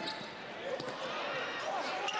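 Crowd murmur and court noise in a basketball arena during live play.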